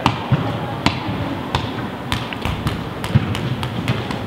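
Irregular sharp taps and thuds, about three a second, over a steady background hum in a large indoor sports hall, from running feet and balls striking the floor.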